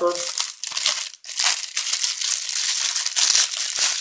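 Cellophane wrapper crinkling and crackling as it is pulled off a boxed leather case, with a short break a little over a second in.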